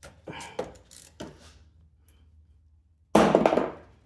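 Gloved hands working a part loose in a fuel-injected scooter engine bay: soft handling noises, then a sudden loud thunk-like burst a little after three seconds in that dies away within a second.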